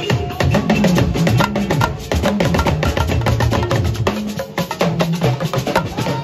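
Tungba (alujo) drumming: quick, dense strokes on a cluster of small Yoruba drums, with low drum notes bending up and down beneath them in the way of a talking drum.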